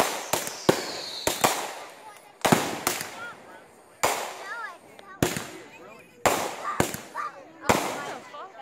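Aerial fireworks bursting overhead: a string of sharp bangs, irregularly spaced about half a second to a second and a half apart, a few coming in quick succession in the first two seconds. A high whistle falls in pitch during the first second.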